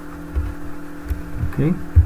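Steady low electrical hum in the recording, with a few soft low thumps, and a spoken "okay" near the end.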